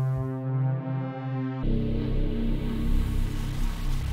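Omnisphere software synthesizer holding a chord while the mod wheel, driven by a pedal, sweeps across the CC crossover between two stacked patches. About one and a half seconds in, the bright sustained patch cuts off abruptly and a darker, lower patch takes over, a hard switch with no overlap between the zones.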